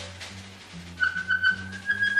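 Live free-jazz trio: a double bass plucks a walking line of low notes, and about a second in an alto saxophone enters with a high, thin, whistle-like held note in its altissimo register that creeps slightly upward in pitch.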